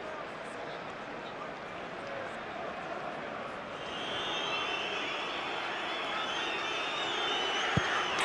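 Football stadium crowd noise, joined about halfway through by many fans whistling at once as the penalty is about to be taken, growing louder. Near the end comes a single sharp thump of the ball being struck from the spot.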